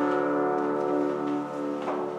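A keyboard instrument holding the closing chord of a hymn, its steady tones slowly fading. There is a light click near the end.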